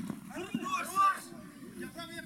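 A sharp thud of a football being kicked right at the start, then a loud shout from players on the pitch that peaks about a second in, at a goal-mouth chance.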